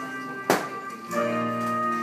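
Instrumental introduction to a cabaret song: held chords, broken about half a second in by one sharp knock, the loudest sound here. After a short dip, a new chord with a deep bass note comes in.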